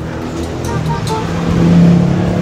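A road vehicle's engine passing close by, its steady hum growing louder toward the end.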